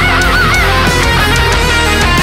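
Heavy rock music: a distorted electric guitar lead plays wavering, vibrato-laden bends over the full band.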